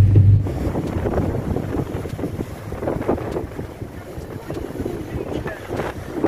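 Strong wind buffeting the microphone over the rush of a rough sea breaking against a seawall, slowly easing. A steady low car-engine hum cuts off about half a second in.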